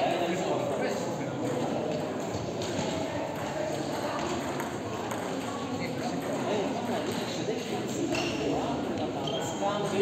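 Table tennis ball clicking off paddles and the table during a rally, over a steady background of many voices talking.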